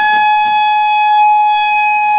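Electric guitar holding one high note, sustained steadily after a slide up in pitch.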